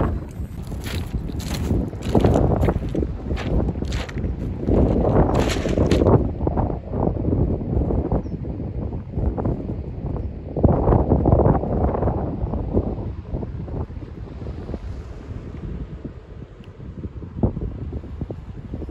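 Strong wind buffeting the microphone: a loud, gusting rumble that rises and falls, crackling during the first six seconds or so and easing a little near the end.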